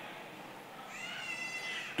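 A single high-pitched call from someone in the audience, starting about halfway through, rising in pitch and then held for about a second, over faint hall room tone.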